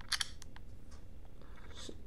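Quick sharp clicks from an iPod touch as it is switched off and back on with its sleep/wake button to show the lock screen: a tight cluster just after the start, then a couple of fainter single clicks.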